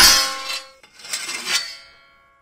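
Layered sword-clash sound effect, built from metal struck together: a sharp metallic clang with a ringing, rattling tail, then about a second in a scrape of blade on blade, the ringing fading out at the end.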